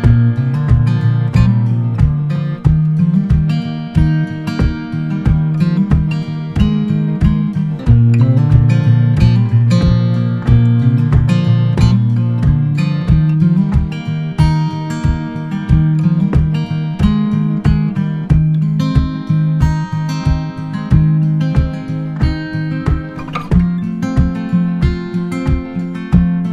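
Background music: an acoustic guitar picked in a steady, even rhythm.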